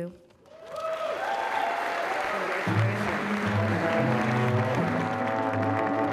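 Audience applause swelling after a speech, with a live band starting to play: held instrument notes come in about half a second in and a bass line joins about three seconds in.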